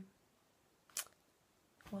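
Near silence of a quiet room, broken once about halfway through by a single short, sharp click.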